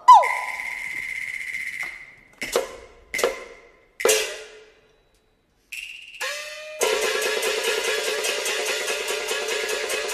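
Cantonese opera accompaniment: a struck percussion note rings out, followed by three separate ringing strikes and a short silence. About seven seconds in, the instrumental ensemble starts a steady, fast rhythmic passage with plucked strings.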